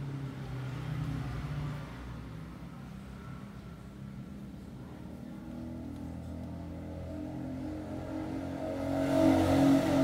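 An engine running steadily, growing louder toward the end.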